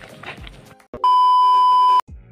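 A single loud, steady electronic beep tone, about a second long, starting about a second in and cutting off abruptly. Before it comes a second of quieter mixed background sound.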